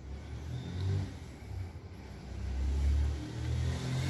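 A low rumble, like a motor vehicle going by, that swells about a second in and again, louder, around the third second.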